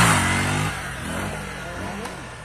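Honda 125 motorcycle's single-cylinder pushrod engine revving as the bike pulls away, then fading steadily as it rides off.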